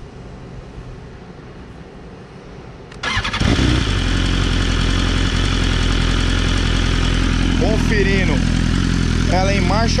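BMW S1000RR's inline-four engine starting about three seconds in with a brief crank, then idling steadily through a full titanium aftermarket exhaust with its dB killer baffle fitted.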